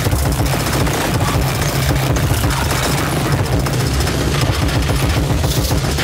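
Experimental electronic noise music: a loud, dense wall of distorted noise over a heavy low rumble, flickering rapidly and irregularly.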